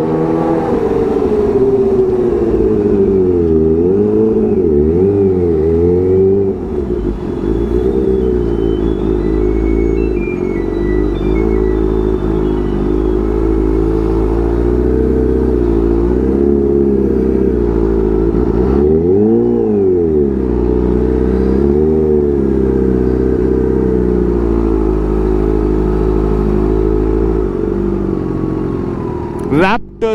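Kawasaki Ninja H2's supercharged inline-four engine under way in traffic, its pitch rising and falling with the throttle, with several quick revs early on and one more about two-thirds of the way through.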